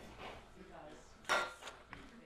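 Faint voices and room noise in a studio, with one sharp clatter of a hard object a little past halfway, the loudest sound here.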